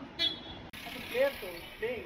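Brief indistinct voices over a steady outdoor background hum, with an abrupt change in the background about a third of the way through.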